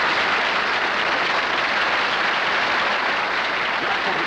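Live audience applauding, a steady even clapping.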